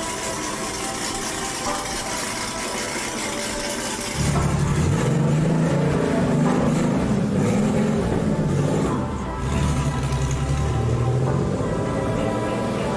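Air-cooled flat-six engine of a Porsche 964 running, coming in loud about four seconds in and dipping briefly before it continues, with background music throughout.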